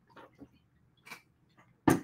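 A man drinking from a bottle: a few faint, short swallowing sounds, then his speech resumes near the end.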